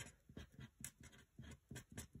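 Faint pen strokes on paper: short, irregular scratches as words are written out by hand.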